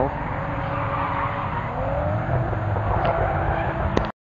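Drift car sliding through a corner with its tyres smoking: engine running hard under the screech of the sliding tyres, the engine note rising about halfway through.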